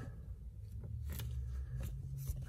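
A few faint taps and light rubbing as a hand presses a small head-up display unit down onto a rubber pad on a plastic dashboard, over a low steady hum.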